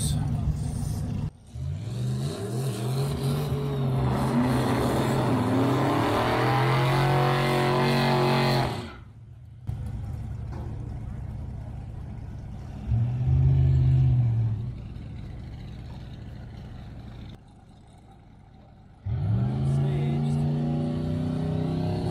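Drag-race cars at the starting line doing a burnout: engines rev up in long rising sweeps, give a short loud throttle blip about halfway through, and rev up again near the end. The sound breaks off abruptly a few times.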